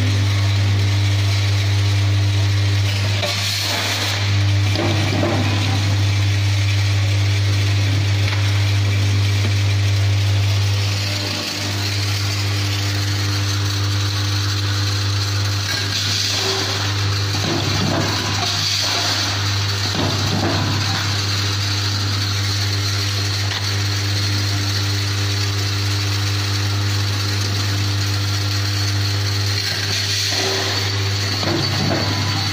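Tablet-counting sachet packing machine running: a steady low electrical hum, with bursts of mechanical clicking and clatter as it cycles, around the fourth second and again in the middle of the run.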